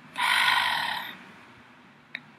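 A woman's audible breath: a single rush of air lasting about a second, then quiet room noise.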